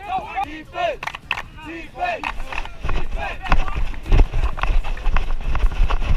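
Brief indistinct voices, then from about halfway a player running on grass, the footfalls thudding heavily into the body-worn microphone a few times a second.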